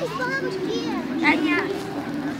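Children's voices at play: high-pitched calls and chatter, with a louder shout a little over a second in.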